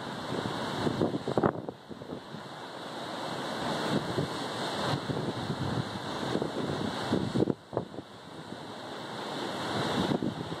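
Wind buffeting the microphone over the noise of a rough sea, in gusts that drop away sharply twice.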